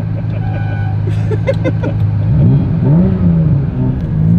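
1987 Ferrari Testarossa's flat-12 engine heard from inside the cabin, running steadily at a crawl, then revved twice a little past halfway, the pitch rising and falling each time.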